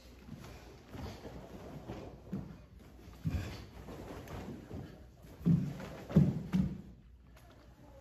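Bare feet thudding and sliding on a wooden floor, with karate uniforms rustling, as two karateka turn, kick and land back in stance. There are a few dull thuds, one a few seconds in and a cluster of three near the end, the loudest among them.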